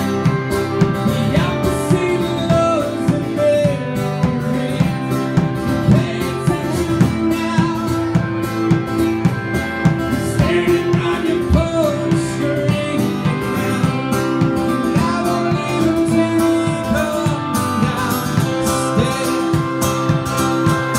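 A country band playing: guitars over a steady drum beat, with some notes sliding up and down in the melody.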